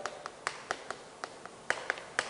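Chalk tapping and scratching on a chalkboard as a word is written by hand: a quiet, irregular series of short sharp ticks, about seven or eight in two seconds.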